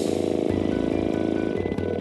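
Pneumatic-hydraulic universal rivet actuator running under compressed air as it presses the material, a steady buzz with a rapid, even pulse that starts suddenly and stops near the end.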